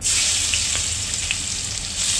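Minced garlic hitting hot oil in a pan: frying with a loud, steady sizzle that starts suddenly as the garlic goes in, with a few small crackles.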